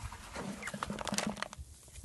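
Hands kneading wet, sticky clay soil in a plastic bucket: a cluster of small squelching and crackling sounds, busiest in the middle.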